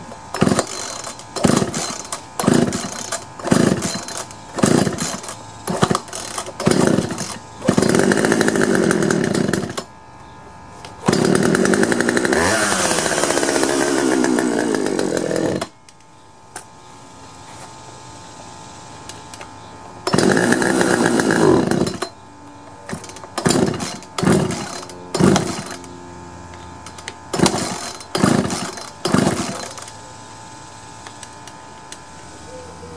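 Poulan 2150 chainsaw's two-stroke engine being pull-started on choke: a quick series of rope pulls, then it catches and runs for about two seconds and dies, runs again for about four seconds with its speed rising and falling, then cuts off suddenly. After a pause it runs briefly once more and dies, and more rope pulls follow; the owner takes the stalling to mean the carburetor needs adjustment.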